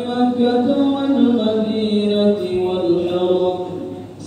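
Men's voices chanting the salawat (blessings on the Prophet) in a slow, drawn-out Arabic melody with long held notes. It is the response to the verse calling believers to bless the Prophet.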